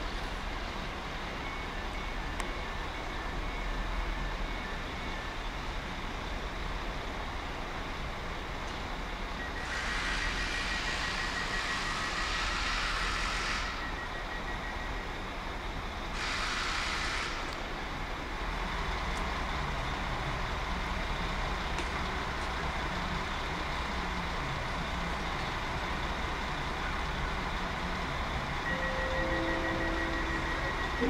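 Railway station background with a steady low rumble of trains. Two bursts of hissing sit over it, a long one about ten seconds in and a short one around sixteen seconds. A rapid pulsing beep sounds in the middle and again near the end.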